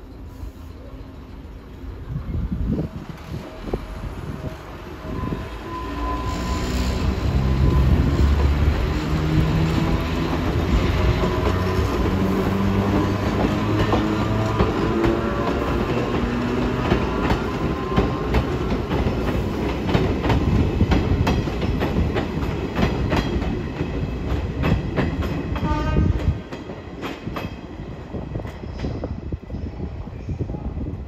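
The nose-suspended (tsurikake) traction motors of Izuhakone Railway's Kode 165 electric car give a gear whine that climbs in pitch again and again as the car accelerates away, hauling a 5000-series EMU. Wheels clatter over rail joints and points underneath. The sound drops off suddenly about 26 seconds in as the train moves away.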